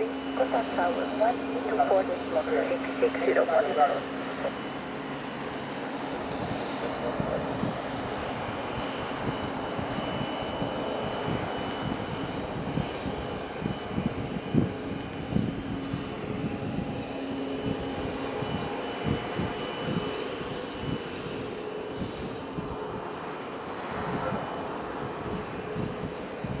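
Boeing 737-8 MAX airliner idling on the ground: a steady jet whine with a faint high tone held through the middle.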